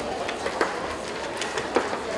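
Steady background noise of a large sports hall with a few scattered knocks; two sharper ones come about half a second in and near the end.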